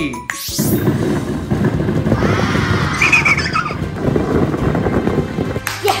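Edited-in sound effects over music: a quick rising whoosh about half a second in, then a dense, steady rushing noise that stops shortly before the end.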